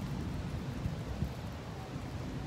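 Steady outdoor background noise: a low rumble with a faint hiss and no distinct events.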